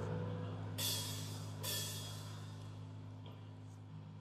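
Two light cymbal strikes from a rock band's drum kit on stage, a little under a second apart, over a steady low hum from the stage amplification; the whole sound fades out.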